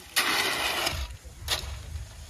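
A hoe scraping and dragging through a pile of gravel on brick paving: one long scrape lasting most of a second, then a shorter one about a second and a half in.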